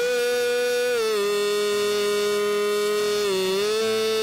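A man's singing voice holding one long note at the end of a sung line, dropping a step in pitch about a second in and rising back near the end.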